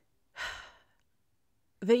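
A woman's short, breathy sigh of exasperation, about half a second long, followed by a pause before she speaks again.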